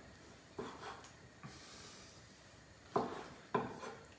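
Knife cutting a tuna steak into small chunks on a cutting board: four soft knocks as the blade meets the board, the last two, near the end, the loudest.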